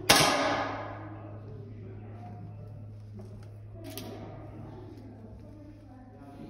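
A single air rifle shot: a sharp crack just after the start that rings out in the range hall for nearly a second. A fainter click follows about four seconds in, over a steady low hum.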